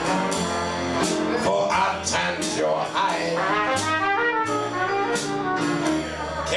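Trumpet playing a melodic jazz line in a Dixieland band, over moving upright bass notes and drum-kit cymbal strokes.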